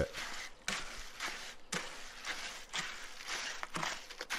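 Garden hoe scraping and chopping back and forth through freshly wetted Quikrete 5000 concrete mix in a wheelbarrow, in a string of irregular strokes about two a second. The mix has been brought to a workable, fairly stiff consistency.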